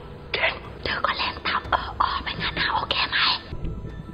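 A person whispering close to the microphone in short breathy phrases.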